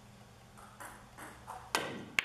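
Pool shot: a few faint taps, then a sharp click of pool balls colliding with a short ring near the end, as the cue ball is driven at a cluster of object balls to try to break it up.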